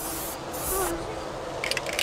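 An aerosol spray-paint can hissing in short spurts as paint is sprayed onto a car body, with wind rumbling on the microphone.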